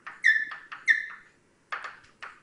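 Writing on a board: short scratchy strokes with two loud, high-pitched squeaks about two-thirds of a second apart, then a couple of quick scrapes near the end.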